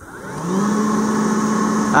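Leaf blower on its low setting spinning up as the trigger is squeezed: its whine rises for about half a second, then runs at a steady pitch as it pushes air down a flexible duct hose into a lidded container.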